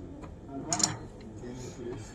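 Quiet murmur of background voices, with one short sharp clack a little under a second in.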